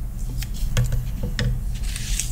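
A few light clicks and rustles of scissors and small cut construction-paper pieces being handled on a tabletop, over a low steady hum.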